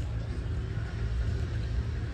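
Wind buffeting the microphone outdoors, a low, uneven rumble.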